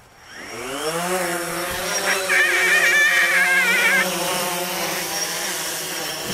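DJI Phantom 3 Standard quadcopter's motors and propellers spinning up for takeoff, a whine rising in pitch over the first second, then a steady buzzing drone. A higher wavering whine rides over it for about two seconds in the middle.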